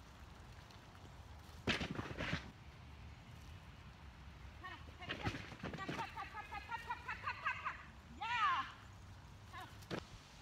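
A person's voice, heard from some distance, calling short cues and encouragement to a dog working an agility course. There are several separate calls, about 2 s in, through the middle, and one short high call near the end, over a faint outdoor background.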